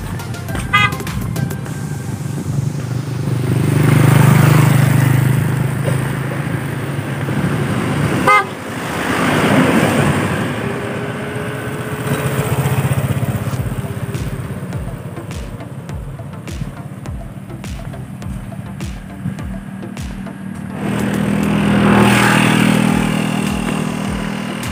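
Motor vehicles passing one after another on a road, each swelling up and fading away, with a horn tooting briefly.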